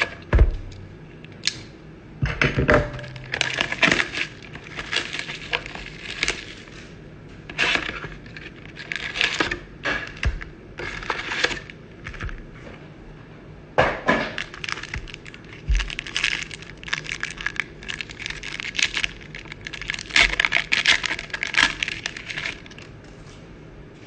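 Crinkling and rustling of foil-wrapped trading-card packs and their cardboard hobby box being handled, in irregular bursts with short pauses, as the box is opened, the packs are taken out and one is torn open. A few low thumps come early on.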